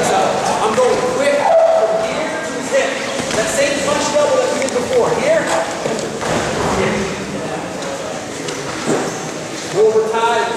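Indistinct voices echoing in a large gym hall, over the thuds and scuffs of wrestlers' feet and bodies on the mat as a double-leg takedown is drilled, with one sharp thud near the end.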